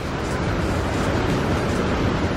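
Ocean waves breaking and churning over coastal rocks: a steady rushing noise of surf.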